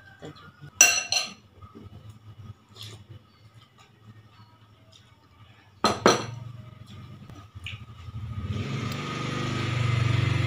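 Metal spoon and fork clinking against a ceramic soup bowl while eating: a few sharp clinks, the loudest pair about a second in and another pair around six seconds. Near the end a steady rumbling noise swells up and holds.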